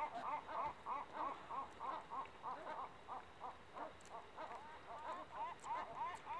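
A bird calling over and over in short rising-and-falling notes, about three a second, a little quieter in the middle.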